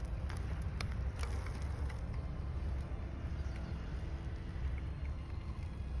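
Low, uneven rumble of wind buffeting a phone microphone outdoors, with a few faint clicks.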